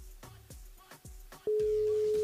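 Telephone ringback tone of an outgoing call that has not yet been answered: a steady single-pitched beep that comes on about one and a half seconds in, over background music with a steady beat.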